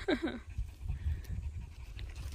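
A brief voice-like call right at the start, falling in pitch in two quick parts, over a low rumble.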